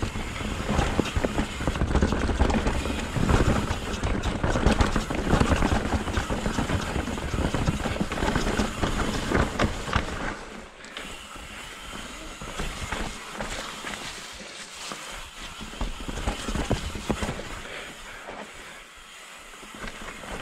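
Mountain bike riding down a rough, rocky trail: tyres rumbling and the bike clattering over rocks and roots. About halfway through it settles into a quieter rolling sound with only occasional clicks.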